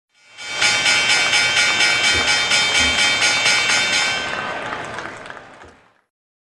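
Synthesized intro sound logo: a held chord of many bright tones pulsing rhythmically about five times a second, then fading away over the last two seconds.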